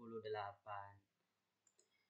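A man's voice trailing off, then quiet and two quick, faint computer mouse clicks about a second and a half in.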